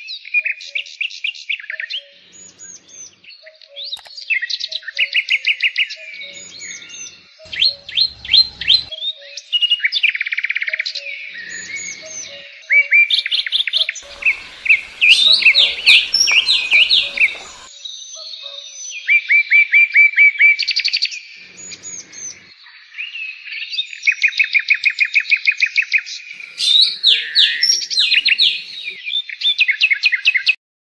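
A bird calling in rapid trains of short, high-pitched chirps and trills, bursts of a second or two separated by short pauses.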